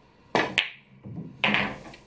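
A pool shot: the cue tip strikes the cue ball, and a moment later the cue ball hits an object ball with a sharp, ringing click. About a second later comes a duller knock with a short rumble.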